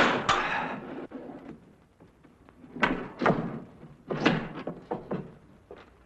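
Several thuds and knocks with rough scraping between them, as the iron bars of a window and the wall below them are handled.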